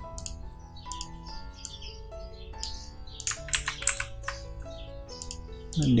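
Soft background music of sustained notes, with sharp computer keyboard and mouse clicks scattered through it, including a quick run of several clicks about three and a half seconds in.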